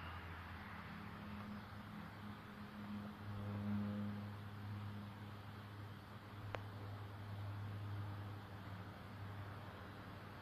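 Soft puffing on a Savinelli tobacco pipe while two lit matches are held over the bowl to char the tobacco, over a low steady hum. There is a single sharp tick about six and a half seconds in.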